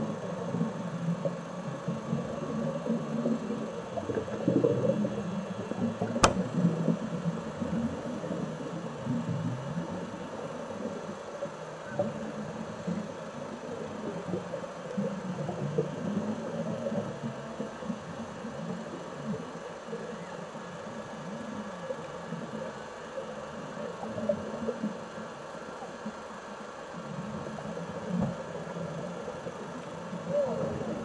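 Muffled, irregular underwater rumbling picked up through a camera's underwater housing during a shallow dive, rising and falling in surges. There is one sharp click about six seconds in.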